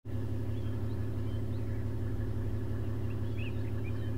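A vehicle engine idling steadily, with a few short bird chirps over it.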